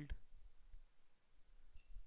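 Faint computer mouse clicks as an item is picked from an on-screen list, with a brief high-pitched beep near the end.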